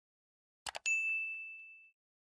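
A quick double click and then a single bright bell ding that rings out and fades over about a second. It is a notification-bell sound effect, marking the bell being switched on in a subscribe animation.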